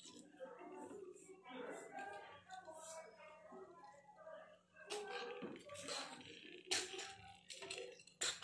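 Faint voices talking in the background over a low steady hum. In the second half there are several short knocks and taps as fried egg halves are set onto a plate.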